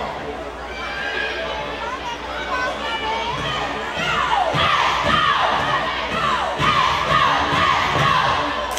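Cheerleaders shouting a chant together over gymnasium crowd noise. It gets louder about halfway through, with thuds among the shouts.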